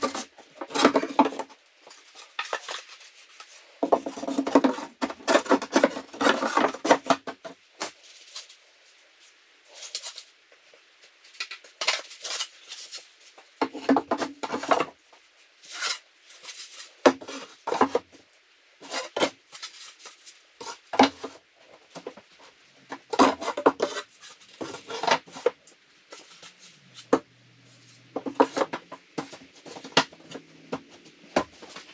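Wooden slats knocking, clattering and rubbing against a wooden closet frame as they are handled and set into place as shelves, with a dense run of rattling knocks early on and scattered single knocks after it.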